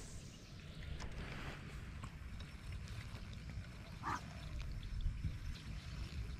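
Steady low rumble of wind on the microphone in an open field, with faint scattered ticks and one short, chirp-like animal call about four seconds in.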